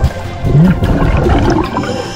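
Underwater gurgling and rushing water as heard on a camera submerged beside a diver digging in sand, under background music.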